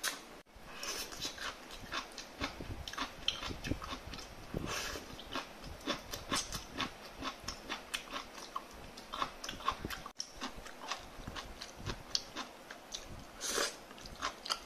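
Close-up sound of a person chewing cooked prawns, with many quick wet clicks, crunches and lip smacks in an uneven patter. It drops out briefly twice.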